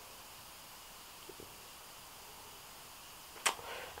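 Quiet room tone with a steady faint hiss, and one sharp click about three and a half seconds in.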